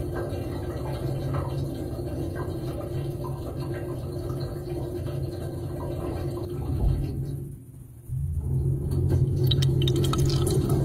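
Dishwasher filling with water, heard from inside the tub: a steady low hum with water running in. About eight seconds in the sound briefly drops away, then returns louder as the cycle moves on to wetting the dishes, with water spattering near the end.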